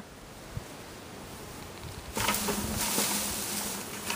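A honeybee swarm being shaken off leafy branches into a plastic bucket: about two seconds in comes a sudden rustle of leaves with a steady buzzing of disturbed bees, which slowly fades.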